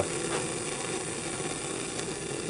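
Bunsen burner on its hot blue flame, air hole open, burning with a steady rushing noise.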